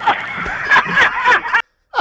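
Laughter, snickering and chuckling, for about a second and a half, then cut off abruptly.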